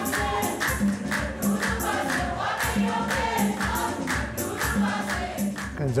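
Church choir singing, backed by a quick, steady percussive beat.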